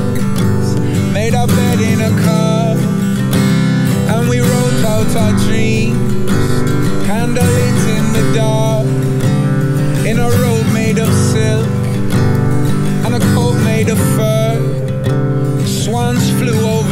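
Steel-string acoustic guitar strummed steadily in an instrumental passage of a folk song, with a wavering melody line gliding above the chords.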